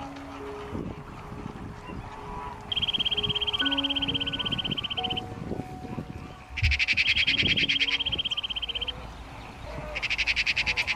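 Animal calls in a rapid, high-pitched pulsed trill starting about three seconds in, then a second, louder trill about six and a half seconds in, lasting about two seconds each.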